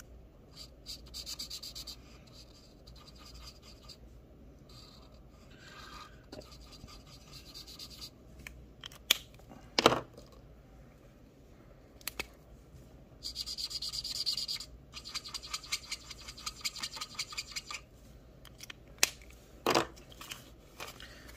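Felt-tip marker scribbling on a paper sheet, fast back-and-forth colouring strokes in runs, with a few sharp knocks in between.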